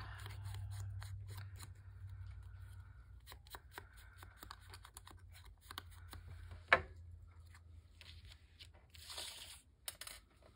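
Foam ink blending tool rubbed and dabbed against a small piece of paper: soft scuffing and light taps, with one sharp click about two-thirds of the way through and a short rustle near the end.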